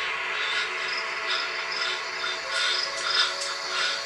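Film trailer soundtrack: a sustained drone of several held tones, with faint high chirps repeating through it.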